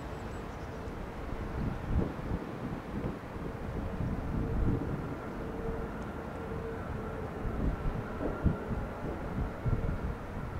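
Airbus A320neo's CFM LEAP-1A turbofan engines running at taxi power, a steady whine with a fainter higher tone. An uneven low rumble of wind on the microphone surges now and then.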